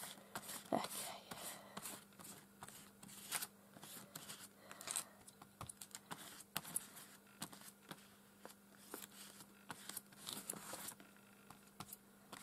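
Silicone hair-dye brush dragged through wet paint on paper: faint, irregular scraping strokes.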